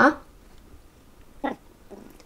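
A cat gives one short, brief mew about one and a half seconds in.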